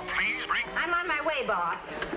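A voice making wordless, swooping sounds over music.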